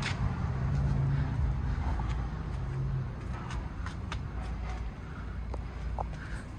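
Low rumble of road traffic with an engine hum, loudest over the first three seconds and then fading, with a few faint clicks later on.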